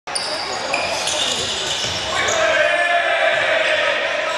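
Handball game play in a large, echoing sports hall: the ball bouncing on the court floor and sneakers squeaking in short high chirps as players move.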